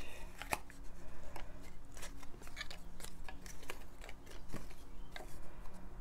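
Small folded paper slips being handled and unfolded by hand, making irregular crisp crinkles and ticks of paper.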